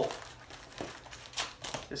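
Crinkling and rustling of vinyl record packaging being handled, with a few light taps as a record is picked up.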